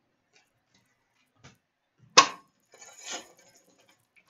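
Trading cards and a wrapped card pack being handled: a sharp tap about two seconds in, then a brief crinkly rustle of the pack's wrapper.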